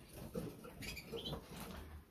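Faint rustling and scratching of small cage birds moving about, with a brief high chirp about halfway through.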